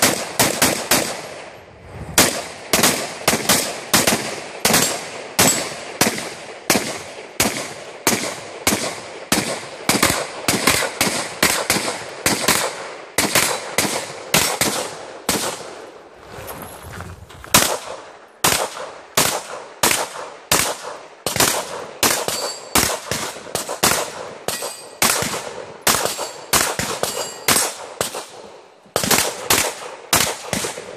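Rapid strings of gunshots from a competitor shooting a 3-gun stage, opening with semi-automatic rifle fire. There are short breaks about a second in and a longer one about halfway through.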